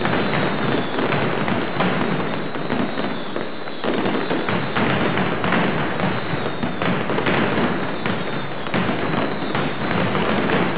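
Mascletà: a dense, unbroken barrage of firecrackers, many rapid bangs running together into a continuous crackle, thinning briefly about three and a half seconds in.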